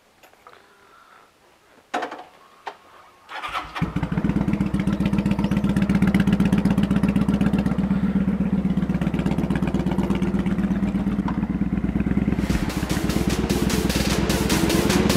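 Kawasaki Vulcan 900 V-twin motorcycle engine started after a couple of clicks: it catches about three and a half seconds in and runs with an even pulsing beat. Music with a beat comes in near the end.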